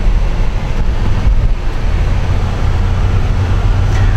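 Cabin noise of a 2006 Range Rover Sport Supercharged on the move, heard from inside: a steady low rumble from its supercharged 4.2-litre V8 and the tyres on the road.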